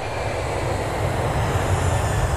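A low, steady rumbling noise with a hiss over it and no clear pitch.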